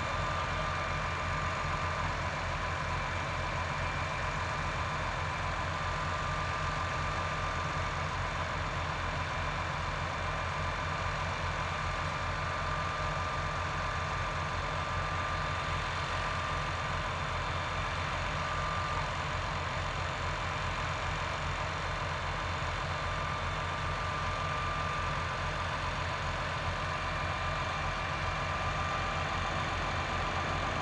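Diesel engines of railway track machines, a ballast tamper and ballast regulator, idling steadily with a low, even pulsing. A thin high whine rides on top and drops out and returns a few times.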